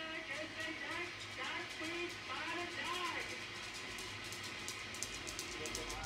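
Live rocket-launch broadcast playing from a television at liftoff: voices with music, and a low rumble building near the end.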